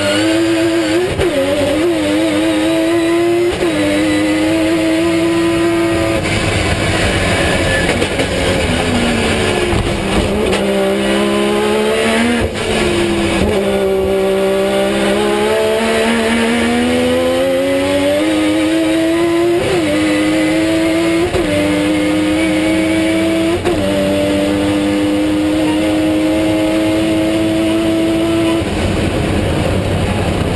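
Mazda RX-7 time-attack car's engine at full race effort, heard from inside the cabin: its note climbs steadily through the gears with several sharp upshift drops, falls away twice under braking and builds again. Near the end the engine tone fades, leaving a broad rush of noise.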